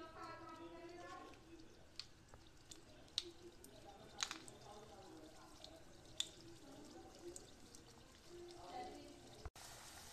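Quiet oil frying gently in a kadhai, with a handful of short sharp pops from the batis in the hot oil and a faint voice in the background.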